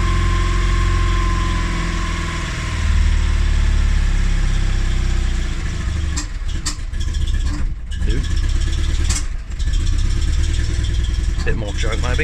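Invacar Model 70 three-wheeler's air-cooled flat-twin engine running on a fast idle just after a cold start. Its revs come up about three seconds in under a little throttle, then sag unevenly a few seconds later with several sharp clicks. It is still warming up with the choke being taken off, a bit early by the owner's own reckoning.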